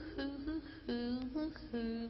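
Quiet passage of a slow live jazz ballad. A few soft, held pitched notes sound, four of them in about two seconds, each starting with a light attack, between a female singer's phrases.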